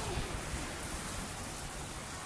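Steady, even hiss of water running in a walrus pool, with a low rumble under it and no distinct splashes.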